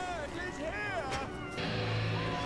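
Soundtrack of a puppet TV show playing back at modest level: a character's short lines of speech over background music, with a low steady note coming in about halfway through.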